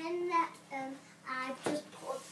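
A young girl singing a few short held notes, with a single thump near the end.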